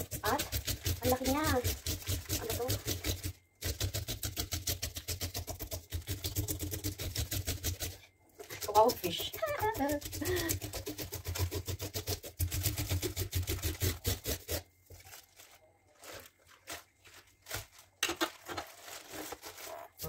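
A knife scraping the scales off a large rainbow trout in a sink: rapid, even scraping strokes that pause twice and stop about three quarters of the way through. Short bursts of a high voice sound over it.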